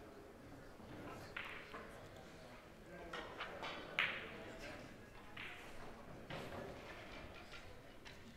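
Billiard hall background: low voices with scattered short clicks and knocks. The sharpest knock comes about four seconds in.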